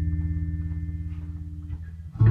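A bass guitar note left ringing under a quieter sustained chord, fading slowly; it is cut off shortly before the end.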